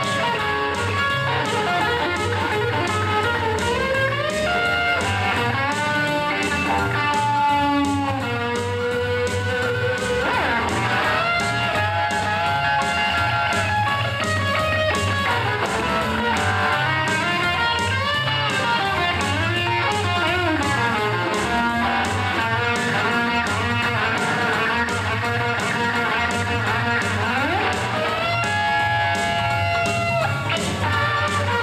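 A Telecaster-style electric guitar playing a continuous run of single notes and chords, with string bends rising in pitch about four seconds in, around ten seconds and again near the end.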